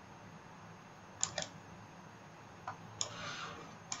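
Faint computer-mouse clicks over low hiss: a quick pair just over a second in, then a few more with a brief soft rustle near the end.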